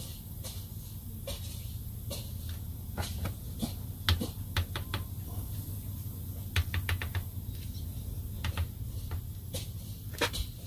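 Side-cut can opener being turned in small steps on the bottom of a pressurized aerosol can, giving sharp, irregular clicks and ticks, with quick runs of them about four and seven seconds in. The can is being cut open slowly to let its remaining propellant pressure escape.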